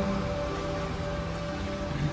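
Steady rain sound effect laid over a slowed, reverb-heavy song, whose held notes ring on quietly through a gap between sung lines.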